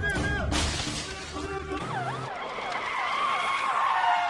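Film soundtrack with a music score: an alarm going off after an alarm button is pressed, then a police siren wailing rapidly up and down, about three sweeps a second.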